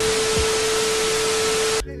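TV-static glitch sound effect: a steady, loud hiss of static with one steady mid-pitched tone held under it, cutting off suddenly just before the end.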